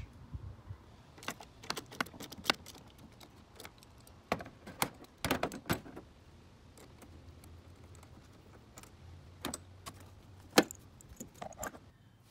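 Scattered light metallic clicks and clinks of small hand tools being handled, coming in a few short clusters, with one sharper knock about ten and a half seconds in.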